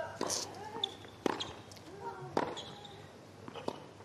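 Tennis ball struck back and forth by rackets in a doubles rally: sharp hits about every second and a quarter, with short voice sounds between them.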